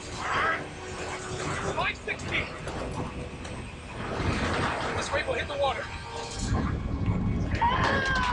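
Short, indistinct voices calling out over a continuous low rumble, with the loudest call near the end.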